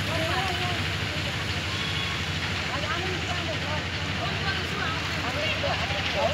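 Faint voices of several people talking, over a steady low rumble.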